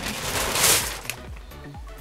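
Plastic shopping bag rustling in one loud rush lasting under a second, about half a second in.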